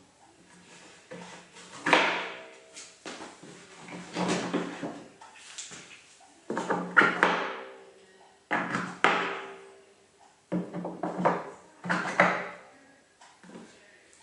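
Metal bench dogs being set into the holes of an MFT-style worktop and handled on its surface: a string of knocks and clunks, each with a short ring, coming about one to two seconds apart.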